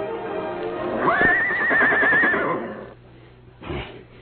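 Horse whinnying sound effect in a radio drama: one call that jumps up sharply about a second in and holds high with a quavering pitch for about a second and a half before dying away, over the tail of orchestral scene-change music.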